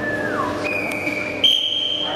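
Referee's whistle blown in two steady blasts, a shorter one and then a higher, louder, longer one, signalling the judges to show their flags for the decision.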